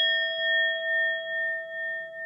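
Bell chime sound effect, ringing on from a single strike and slowly fading with a gentle wavering pulse.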